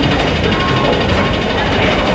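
Steady mechanical rattle and rumble of a running escalator, heard close up.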